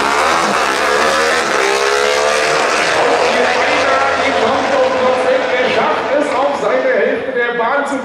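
Two V-twin drag motorcycles at full throttle, accelerating away from the start line side by side, their engine note climbing in pitch during the first few seconds.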